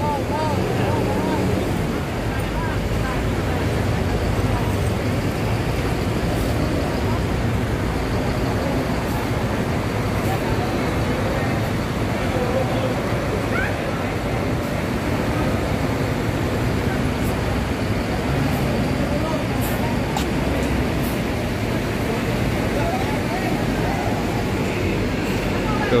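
Bus engines running steadily as coaches pull slowly into a boarding shelter close by, with the voices of a waiting crowd mixed in.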